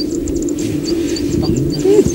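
Outdoor rural ambience: a small bird or insect chirps at a high pitch about three times a second over a steady low hum.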